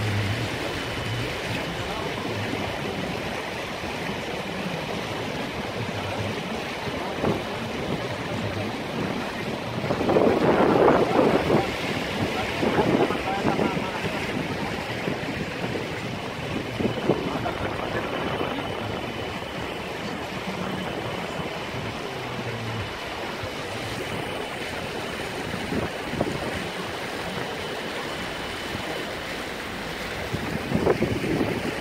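Pickup truck driving through deep floodwater: water washing and sloshing against the body in a steady rush, with a low engine hum at times. There is a louder surge of water about ten seconds in, and a few shorter surges later.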